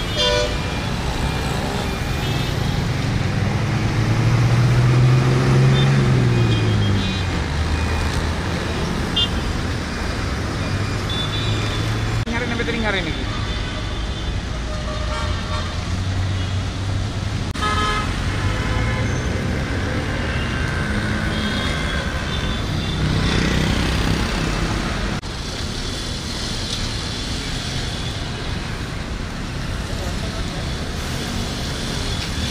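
Road traffic passing: vehicle engines running, the loudest one a few seconds in as its note rises and falls, with short horn toots scattered through and voices.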